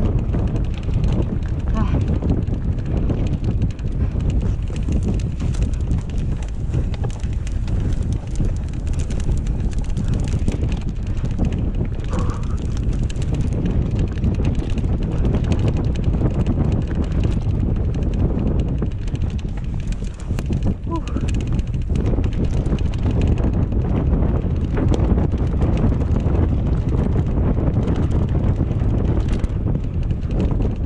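Mountain bike riding down a dirt singletrack: steady rumble of wind on the microphone with a continuous clatter of the bike and its tyres over the rough ground.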